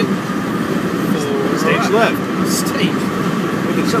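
Steady road and engine noise inside a moving car's cabin, a constant low rumble with hiss.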